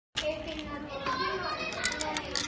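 Children's voices: several kids chattering and calling out at the same time, overlapping one another.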